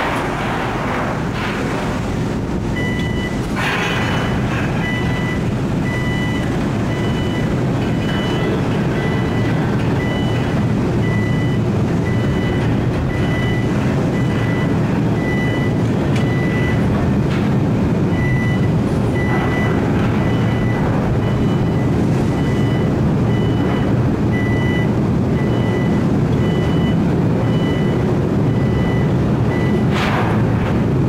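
Steady low rumble of an anchor-handling vessel's deck machinery while the hydraulic Triplex multi-deck handler arm works. From about three seconds in, a warning beep repeats about once a second.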